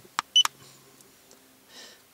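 Handheld iCarSoft i910 diagnostic scan tool: a key click, then a short high-pitched beep from the tool as a menu selection is confirmed, about half a second in.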